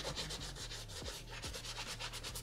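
A cloth rubbed quickly back and forth over the leather upper of an Air Jordan 6 sneaker, a rapid run of short wiping strokes, as the leather is polished with tire shine.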